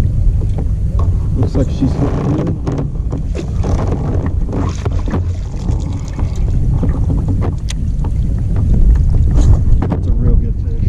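Wind buffeting the microphone in a steady low rumble, over water splashing and sharp knocks as a hooked fish is fought at the side of a kayak and scooped into a landing net.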